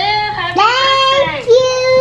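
A child singing in long drawn-out notes, the last one held steady for about a second near the end.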